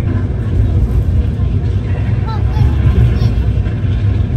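Steady low rumble of a train carriage running, heard from inside, with faint passenger voices.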